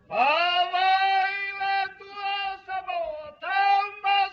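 A high voice singing long held notes. It starts suddenly with an upward slide and breaks off briefly about two seconds in and again near three seconds in.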